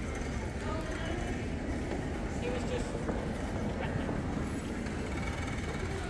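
Background noise of a large indoor hall: a steady low rumble with faint, indistinct voices of people talking at a distance.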